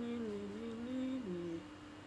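A woman humming a tune with closed lips: a few held notes stepping up and down, dropping to a lower note and stopping about a second and a half in.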